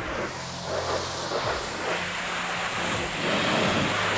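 High-pressure spray from a self-service car wash wand, a steady hiss of the jet striking a foam-covered car's bodywork.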